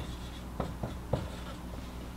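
Marker pen writing on a whiteboard: a handful of short strokes as symbols are drawn.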